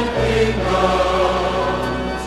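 Choir singing a slow hymn, holding long sustained chords, with a change of chord just after the start.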